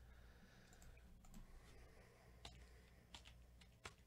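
Near silence broken by a few faint, sharp clicks, bunched in the second half, from a computer mouse being clicked.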